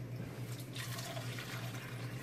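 Water running steadily into a container, over a steady low hum.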